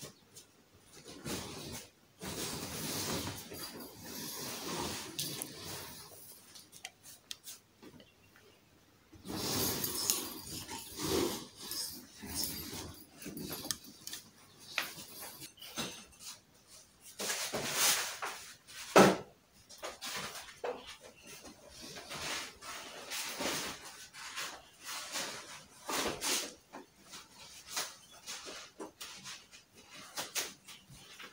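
Fabric wardrobe cover rustling in stretches as it is handled and pulled over the frame, with scattered clicks and knocks from the wardrobe's pipe frame and shelf panels; the sharpest knock comes about two-thirds of the way through.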